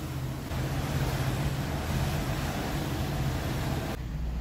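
Motorboat underway: the engine's steady low drone under an even rush of water and wind noise.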